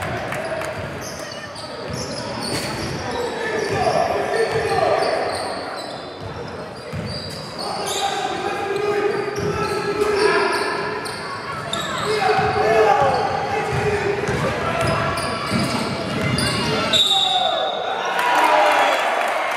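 Basketball game sound in a gym hall: a ball bouncing on the wooden court, with players' voices calling out.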